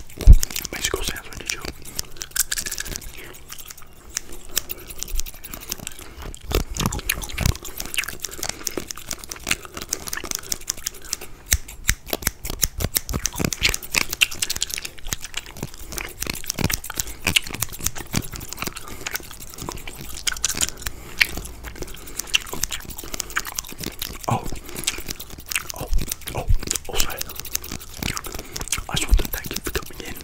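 Close-miked ASMR haircut sounds: a comb and hands moving around a condenser microphone make dense, irregular crackles, clicks and rustles without pause.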